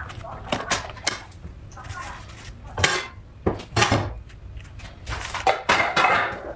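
Plastic rice paddle pressing and scraping rice inside a plastic sushi mold: a string of light clicks and scrapes, with a few louder knocks.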